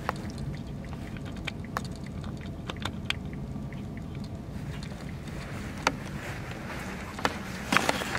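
Steady low drone of a ferry's engines heard inside the passenger cabin, with scattered small clicks and a few louder knocks near the end.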